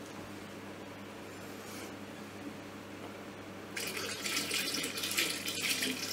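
Water poured from a plastic jug into a plastic fermenting bucket, starting about two-thirds of the way in and running on steadily. The pour tops the must up with water to 23 litres.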